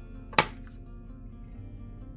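A single sharp tap about half a second in, over faint background music with held tones.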